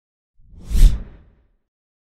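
Logo-reveal whoosh sound effect: one swell with a deep low boom under an airy hiss. It rises about half a second in, peaks just before the one-second mark and dies away by about a second and a half.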